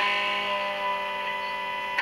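A chord on a 1971–72 Gibson SG Pro electric guitar with P90 pickups, played through a small 10-watt amp, left ringing and slowly fading.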